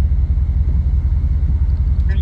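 Steady low rumble with a fast, even pulse.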